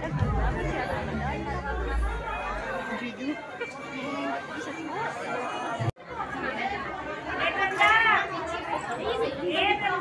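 Crowd chatter: many people talking over one another, with a sudden brief dropout about six seconds in, after which nearer voices are heard.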